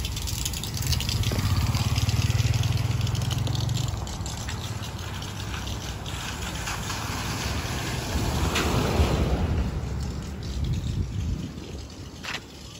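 Vehicle engines on a wet, flooded street: a low engine hum strongest in the first few seconds, then a car driving past through the water, loudest about nine seconds in.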